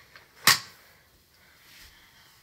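A single sharp plastic snap about half a second in, from a small pink plastic makeup case being handled, followed by faint rustling.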